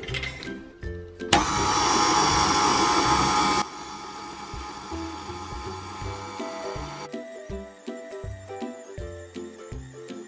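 Electric stand mixer with a dough hook running, kneading flour into a bread dough: its motor whine cuts in suddenly about a second in, loud for a couple of seconds, then softer until past the middle. Background music with a steady beat plays underneath.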